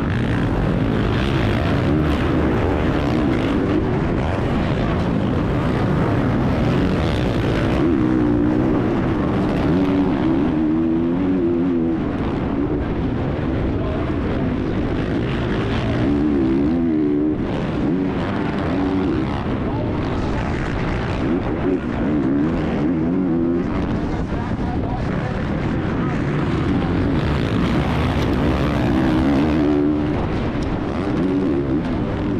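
Onboard sound of a Honda CRF450R four-stroke motocross bike racing flat out, its engine revving up and dropping back over and over as the rider shifts and throttles through turns and jumps, with other bikes racing close by.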